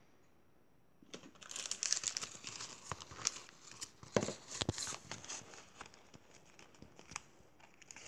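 Crinkling and rustling of things being handled on a cluttered table, starting about a second in, with a few sharp clicks and knocks around the middle.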